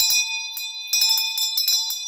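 Brass hand bell shaken so its clapper strikes in quick runs, a few strikes right at the start and a longer run about a second in. A clear, high, many-toned ring holds on between the strikes.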